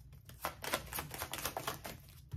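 Deck of tarot cards being shuffled by hand, a run of light, irregular card clicks and flicks.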